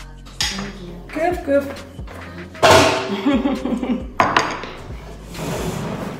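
Dishes and cutlery clattering, with several separate knocks of a bowl and spoon being handled, over background music.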